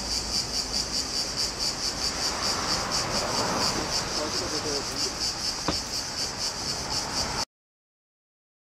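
Cicadas singing in the trees: a loud, high-pitched buzzing that pulses rhythmically and cuts off suddenly near the end. A single faint click sounds about two-thirds of the way through.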